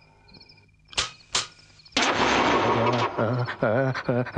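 Crickets chirping faintly at night on a film soundtrack. About a second in come two sharp cracks less than half a second apart. From the middle a loud, harsh, noisy sound takes over, with a man's voice near the end.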